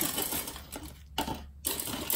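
Plastic model-kit runners clattering and rattling as they are handled and moved over a wooden table: light irregular clicks and rustles, a little louder near the end.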